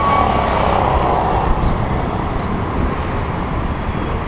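Steady city road-traffic noise picked up by a camera on a moving bicycle, with wind rumbling on the microphone.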